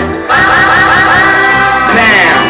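A singing voice holding one long note with a wide vibrato over musical accompaniment, coming in after a brief gap at the start and sliding downward in pitch at the end.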